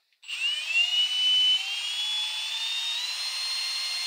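Cordless drill spinning the crankshaft of a Puch TF/SG engine on a test bench to drive its oil pump at zero throttle. The drill's whine starts just after the beginning, climbs in pitch over the first three seconds as it speeds up, then holds steady.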